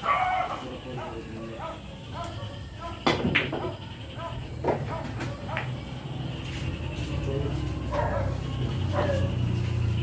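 Pool shot on a billiard table: a sharp click of cue on cue ball right at the start, then a pair of louder ball-on-ball clacks about three seconds in and another a little later, over onlookers' voices.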